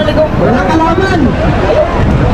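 Several men's voices calling out and shouting, some in drawn-out calls, over a steady low rumbling noise.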